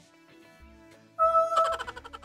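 Soft background music, then a bit over a second in a loud musical sound effect cuts in suddenly: a held note with a quick rippling run over it.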